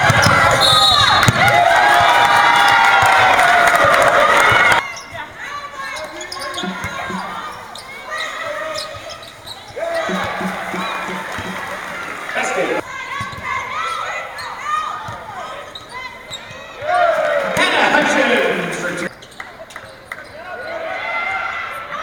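Basketball game sound in an arena: loud crowd noise with many voices, cut off suddenly about five seconds in. After the cut come quieter stretches of a ball bouncing on the hardwood and players' voices, with a second loud burst of crowd noise late on.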